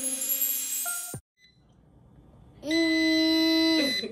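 Background music that cuts off about a second in, then, near the end, a steady electronic beep lasting about a second: an air fryer's alert at the end of its cooking cycle.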